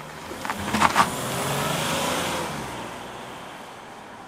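Citroën C6 pulling away and driving off down the road. Its engine and tyre noise swell over the first two seconds and then fade as it moves away. A couple of sharp knocks come about a second in.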